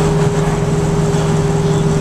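Dodge Dart GT running at steady highway cruise, heard from inside the cabin: an even engine drone with road noise.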